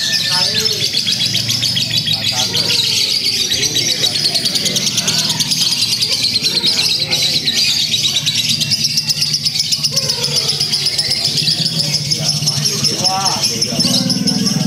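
Lovebird singing one long unbroken trill, a very fast high chatter held for the whole stretch: the long 'ngekek' song that lovebird contests judge by its length.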